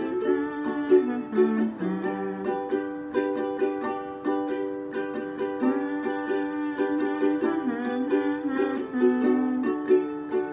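Ukulele strummed in a steady down, down, up, down, up pattern, changing chords every couple of seconds.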